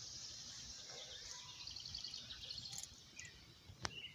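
Faint outdoor ambience: a steady high insect hiss, with a short run of quick bird chirps in the middle and a single click near the end.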